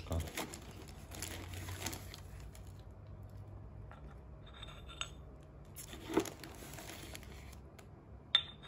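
Quiet handling of a ceramic mate gourd and dry yerba mate being spooned into it: faint rustling and scraping, with a few light clicks and a sharper knock about six seconds in.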